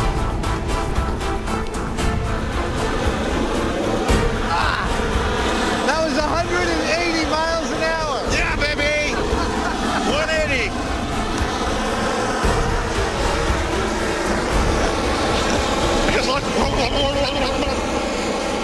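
A steady, loud rushing noise with music over it. A man's voice laughs and exclaims in the middle.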